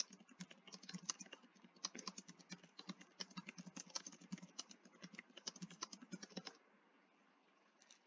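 Faint typing on a computer keyboard: a run of quick, uneven keystrokes that stops about a second and a half before the end.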